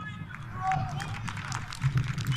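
Match sound from a rugby sevens game: scattered distant shouts and calls from players and onlookers over a low steady rumble, with many short knocks.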